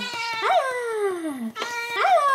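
A domestic cat meowing: one long meow that rises briefly and then falls steadily in pitch, starting about half a second in, with the next meow beginning near the end.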